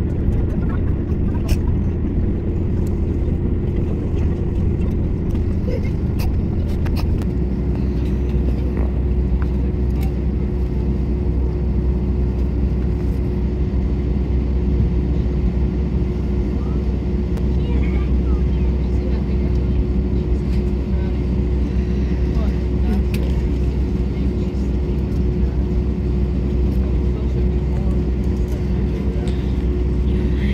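Airbus A320 cabin noise while taxiing after landing: the engines' steady low rumble with a constant hum, the deepest part of the hum dropping in pitch about seven seconds in.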